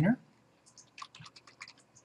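Computer keyboard being typed on: a quick, quiet run of light key clicks starting about half a second in.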